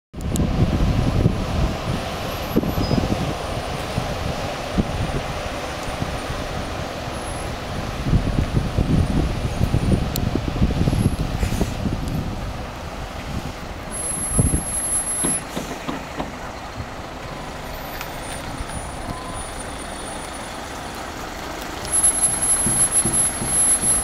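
Diesel touring coaches pulling away and driving slowly past at close range, their engines running with a low rumble that swells as each one passes near.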